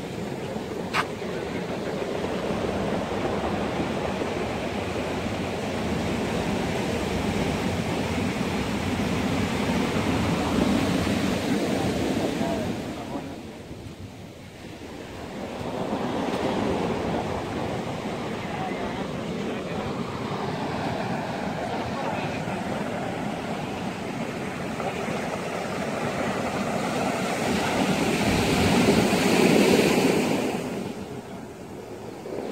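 Surf breaking on a steep cobble beach, the waves rushing up and the backwash dragging and rattling the rounded stones, with wind on the microphone. The sound swells and ebbs: a big surge about ten seconds in, a short lull a little later, and another rise near the end.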